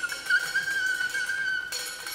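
Free-improvised music: a single sustained high tone held throughout, wavering slightly, with a brief wobble in pitch about a third of a second in.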